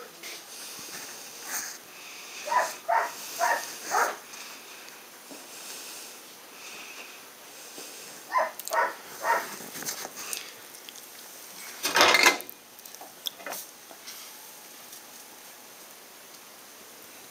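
A dog barking in the background, two runs of about four short barks a few seconds apart. A single loud clunk about twelve seconds in.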